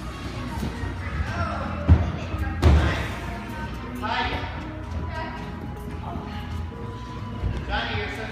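Children's gymnastics on mats: two heavy thumps about two and three seconds in as bodies land on padded mats, over background music and children's voices in a large gym.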